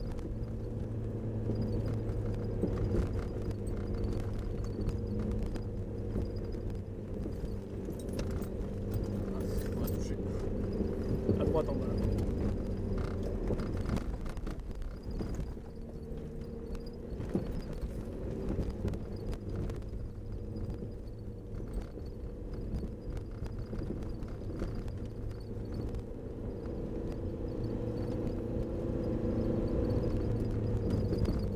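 Jeep Cherokee XJ's 2.1-litre four-cylinder turbodiesel running under load, heard from inside the cabin, its note rising and falling with the throttle. The body and suspension knock and rattle over the rough track.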